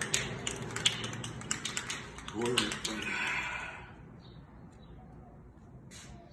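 Spray paint can being shaken, its mixing ball rattling in quick irregular clicks, with a short voice about halfway and a second of hiss just after it.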